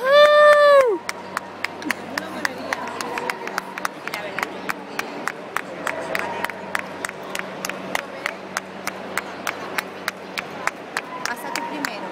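Spectators clapping in a steady rhythm, about three claps a second. It opens with a loud, held whoop from someone close by.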